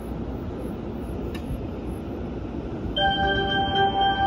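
Steady low rumble, then about three seconds in a station departure melody starts over the platform speakers: a louder tune of clear, bell-like notes.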